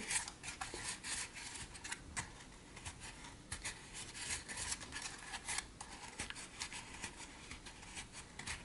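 Fingertips rubbing excess warm hot glue off the laser-cut dome of a model water tower kit: faint scratchy rubbing with light scrapes and small ticks, in irregular strokes.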